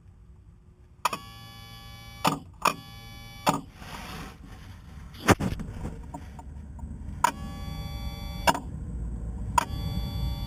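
Electric bilge pump motor, switched by its Rule float switch, running dry with no water: a steady whine in short bursts of about a second, each starting and stopping with a click. The new pump is working.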